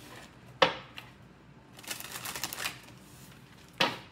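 Tarot cards being handled against a wooden desk: a sharp tap about half a second in, a quick flutter of cards around the middle, and another tap near the end.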